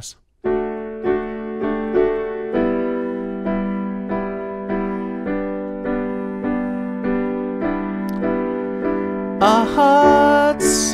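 Digital piano played with the right hand alone: a simple intro of sustained chords (G, G6 and D with a small sus4 step in the top note) struck in a steady rhythm of about two a second. Near the end a man's voice begins singing over it.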